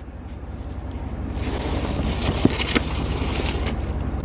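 Steady low rumble of an idling car heard from inside it. A hiss builds in from about a second and a half in, with two faint clicks near the middle.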